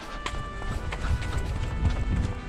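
Quick footsteps of someone climbing earthen steps at a hurried pace, with background music throughout.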